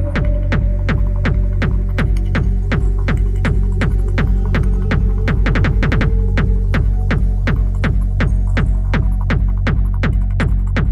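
Dark electronic dance music: a heavy throbbing bass under a held synth tone, with sharp percussive hits about four a second. The hits briefly come faster around the middle.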